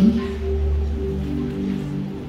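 Electronic keyboard holding soft sustained chords, with a deep bass note that fades out about a second in.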